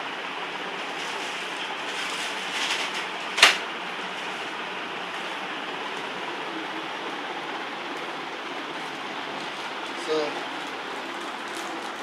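Steady room hiss with light rustling of a plastic courier bag being handled, and one sharp click about three and a half seconds in.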